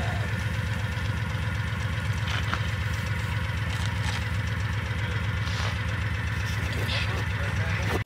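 A vehicle engine idling with a steady, low, even throb.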